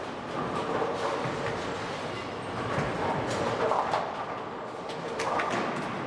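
Bowling ball released and rolling down the lane with a steady rumble, then pins clattering around the middle, over the din of a busy bowling center.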